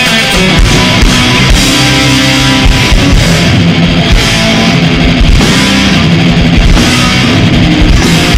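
Live thrash metal band playing loudly: distorted electric guitars, bass and a drum kit driving a fast song without vocals.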